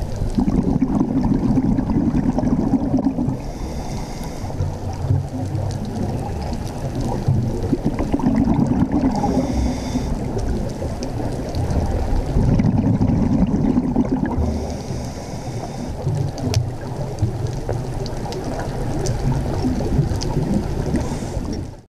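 Underwater ambience: a muffled, rumbling wash of water and bubbles that swells and fades about every five to six seconds, with a brief higher hiss between the swells.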